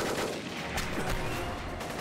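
Gunfire in a firefight: several shots in quick succession, the first sharp at the very start.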